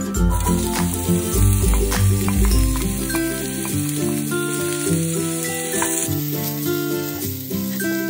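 Sliced carrots sizzling loudly in hot oil in a cast-iron skillet as they are tipped in and stirred with a metal spatula. Background music plays throughout.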